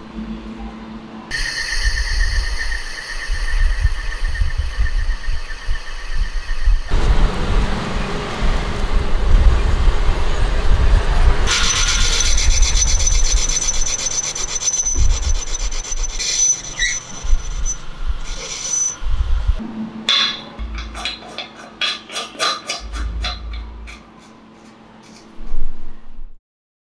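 Metal-lathe machining of a small steel part. A steady machine whine gives way to the noisy cutting of a tool bit against the spinning piece, then a run of quick scraping strokes, with a single loud knock just before the end.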